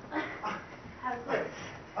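Short wordless voice sounds from a person, pitched and bending like whimpers, with a laugh at the very end.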